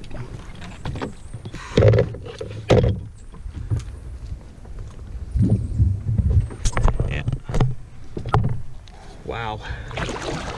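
Canoe paddling through overgrown brush: a single-blade paddle (half of a kayak paddle) dipping and knocking against the canoe, with branches brushing and scraping past. The sound is a run of irregular knocks and thumps, the loudest about two and three seconds in and a cluster in the second half.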